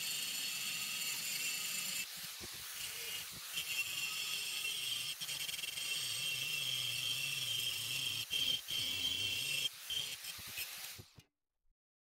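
Angle grinder grinding down proud welds on a steel stair stringer: a steady high-pitched whine and hiss of the disc on the steel. It dips briefly about two seconds in and cuts off suddenly near the end.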